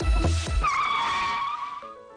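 An electronic dance beat with a heavy kick drum stops about half a second in. A tyre-screech sound effect follows, one sustained squeal lasting about a second, and soft piano notes begin near the end.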